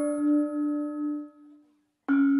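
Gamelan instruments ringing on after their last struck notes, a low steady tone with higher overtones fading away over about a second and a half, then silence.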